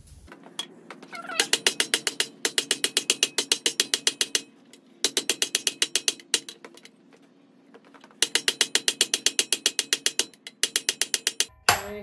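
Hand hammer striking red-hot mild steel held in a cast swage block. The blows come fast and even, about six a second, in three runs with short pauses between. The hammering closes the curled bar into a tube so its edges butt together.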